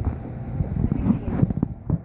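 Rumble and knocks on the camera's microphone, like handling noise as the camera is moved.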